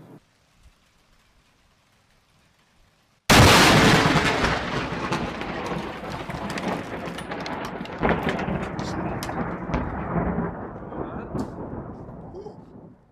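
Near silence, then a very close lightning strike about three seconds in: a sudden, very loud thunderclap that crackles and rumbles as it fades over several seconds, with a second surge about eight seconds in.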